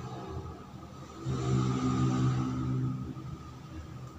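Low engine hum of a motor vehicle, swelling for about two seconds in the middle and then fading, over a faint steady high whine.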